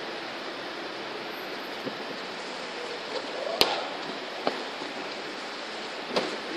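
Steady hiss of room noise, with a sharp click about three and a half seconds in and a fainter click about a second later as a whiteboard marker is handled.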